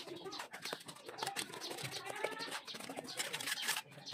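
Steel trowels scraping and tapping on bricks and wet mortar in quick, irregular strokes, with a bird calling briefly a couple of times.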